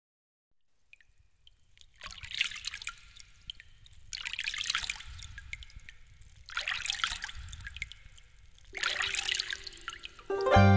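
Water trickling and dripping, starting about a second in, and coming in four surges roughly two seconds apart.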